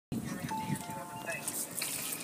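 A person's voice with a steady high musical tone held for under a second, like a snatch of a jingle.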